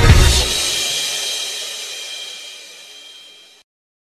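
A hip-hop beat ends about half a second in, and its last hit, a crash cymbal, rings out and fades steadily before the track cuts to silence just before the end.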